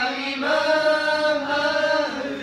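A group of men chanting a mawlid devotional poem together, with no accompaniment, in long held notes.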